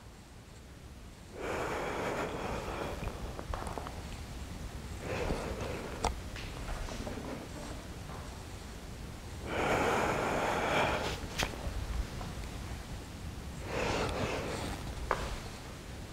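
A person breathing deeply and audibly while doing yoga: four long breaths a few seconds apart, paced with the movements between poses. A few short sharp taps fall between them.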